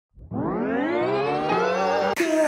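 Synthesized rising sound effect: a chord of many tones fading in from silence and gliding upward in pitch, quickly at first and then levelling off.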